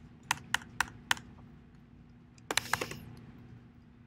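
Computer keyboard keystrokes: four separate key presses spaced about a quarter second apart in the first second, then a quick run of several keys about two and a half seconds in.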